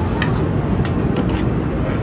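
Loud, steady din of a busy indoor arcade and carnival midway, with a few sharp clicks or knocks through it.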